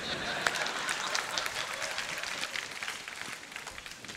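An audience clapping, a dense patter of many hands that dies away over the few seconds.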